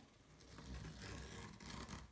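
Faint scraping of a heated fuse tool's tip sliding along a ruler edge as it seals a line in a plastic sleeve.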